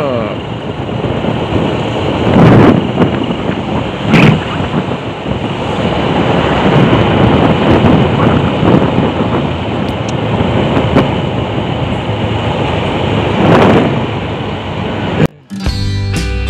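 Wind rushing over the microphone and road noise from a moving Honda scooter on a wet road, with strong gusts about two and a half seconds in, at four seconds, and again near the end. Just before the end the sound cuts out briefly and acoustic guitar music begins.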